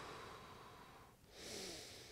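A man breathing faintly: a long breath out that fades away over the first second, then a short breath in near the end.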